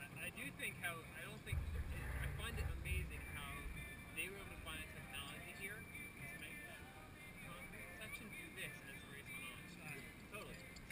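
Faint, distant voices of people talking, with a low rumble of wind on the microphone from about a second and a half to three seconds in.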